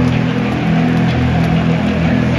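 Loud music from a stadium sound system with held notes that change every second or so, over the dense noise of a large crowd.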